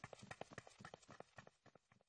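Faint, quick footsteps of a group of children hurrying along a path: many light steps close together that die away near the end.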